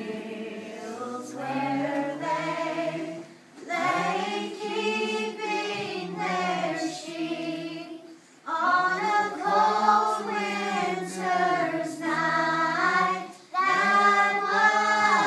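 A group of children singing together, in sung phrases with brief breaks between them at about four seconds, eight seconds and just before the end.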